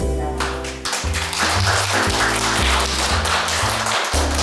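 Background music with a steady low bass line, joined about half a second in by a crowd clapping.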